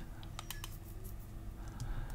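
A short cluster of faint clicks from a computer mouse and keys about half a second in, with a few fainter clicks later, over a low steady hum.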